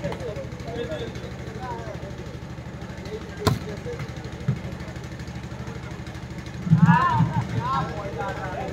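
A volleyball struck hard once, a sharp smack about three and a half seconds in as a serve is hit, over a steady low hum and faint background voices. Near the end loud shouting voices break in as the rally gets going.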